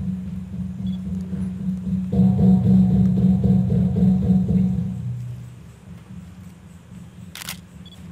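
Large hanging Balinese gongs ringing in long, low, pulsing tones. A fresh stroke about two seconds in adds a louder, higher ringing layer, which dies away after about five seconds. A single sharp click near the end.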